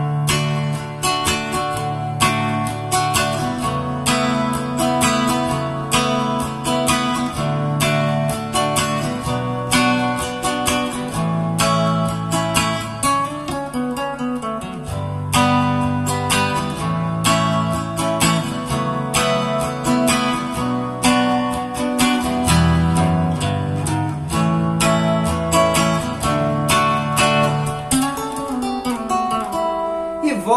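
Nylon-string silent guitar played slowly: strummed chords mixed with picked notes, moving through a chord progression.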